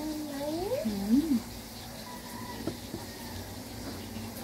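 A young child's wordless, sing-song vocalization, a wavering sound gliding up and then down and up again in pitch for about a second and a half. A couple of light clicks, like cutlery tapping the table, follow near the end.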